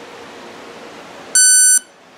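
Startup beep of an RC brushless-motor speed controller, played through a pair of small speakers wired to its motor outputs: after a faint hiss, one steady, high-pitched beep about a second and a half in, lasting under half a second.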